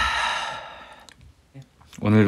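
A man's long, breathy sigh, loudest at the start and fading away over about a second and a half.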